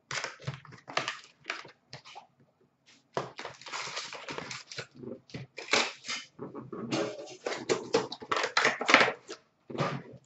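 Hands handling trading cards and their packaging on a glass counter: irregular rustling and light taps, in short bursts with brief pauses between them.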